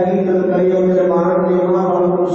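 A man chanting a Sikh prayer into a microphone, holding long steady notes.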